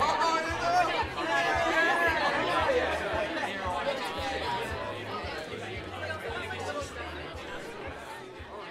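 Many overlapping voices chattering over background music with a low, regular beat, fading out gradually.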